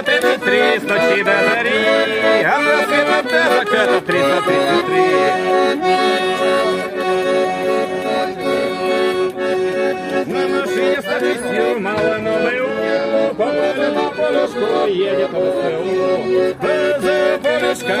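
Button accordion playing a traditional folk tune live, with held chords throughout.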